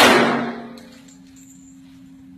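A single pistol shot fired point-blank into the armour plate of a bulletproof vest worn on the shooter's own chest. It is loud at the start and echoes away in the indoor range over about half a second.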